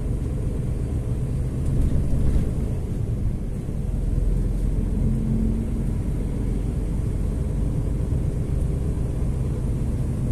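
Steady low rumble of engine and road noise heard from inside a moving truck's cab while cruising.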